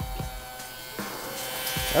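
Electric drum pump motor buzzing steadily while it pumps straight grinding oil from a drum through a hose into the machine's oil tank. A hiss joins the hum about a second in.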